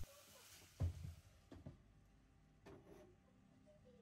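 Mostly quiet, with a few faint, short knocks of a wooden spatula against a nonstick cooking pot as curry is stirred.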